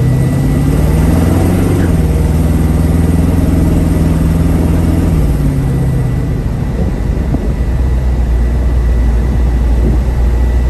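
1967 Camaro's 350 V8 with dual exhaust, heard from inside the moving car: the engine note rises over the first second or two under acceleration, holds steady, then drops about five seconds in and settles into a lower, steady cruising drone.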